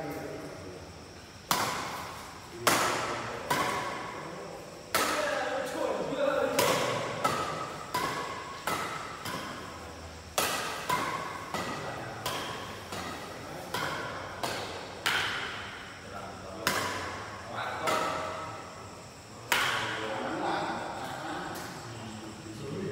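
Badminton rally: rackets strike the shuttlecock again and again, a sharp crack about once a second, with echo from the hall. The hits stop about two seconds before the end, and voices are heard between them.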